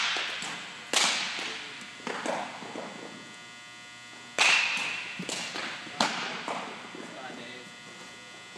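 Sharp smacks of a baseball into leather gloves during pitching practice, each ringing out in a large, echoing gymnasium. There are a few separate cracks, the clearest about a second in and about four and a half seconds in, with a smaller one near six seconds.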